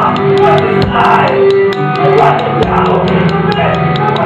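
A rock band playing live: drum kit hits over sustained guitar chords.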